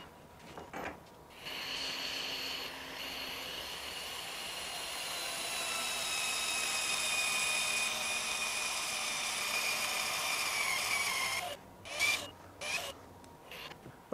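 HYTORC Lithium Series II battery-powered torque wrench tightening a 1¼-inch fine-thread nut to 2,000 ft-lbs: a steady motor whine and gear noise whose pitch slowly falls as it runs. It cuts off near the end, followed by a couple of short clicks.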